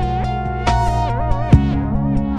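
Electronic (IDM) music: sustained pitched tones with a melody that bends and wavers in pitch, punctuated by sharp drum hits.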